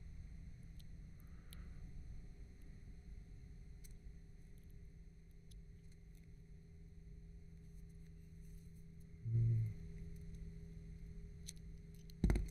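Quiet room with a steady low hum and a few faint small clicks of hands handling a DJI O3 air unit and its antenna connector. A brief low voiced hum is heard about nine seconds in.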